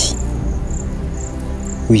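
A cricket chirping in a steady rhythm of short, high chirps, about two a second, over a low, steady background music drone.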